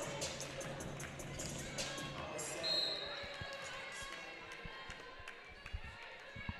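Gym PA music fading away over the first few seconds, a short referee's whistle near the middle, then a volleyball bounced several times on the hardwood floor by the server before she serves.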